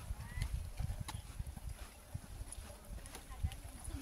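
Footsteps on a concrete path, a few light irregular taps a second, over a low wind rumble on the microphone.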